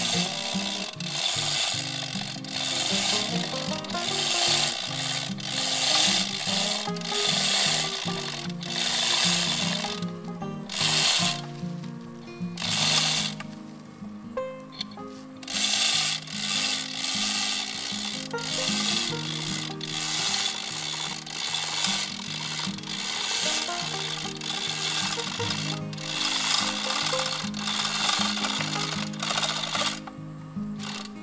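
A hand-operated chain hoist ratcheting in rapid clicks as it lifts an uprooted tree stump and root ball, pausing briefly a few times around the middle. Background music plays underneath.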